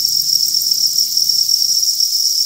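A dense mass of farmed crickets chirping together in a steady, unbroken high-pitched chorus.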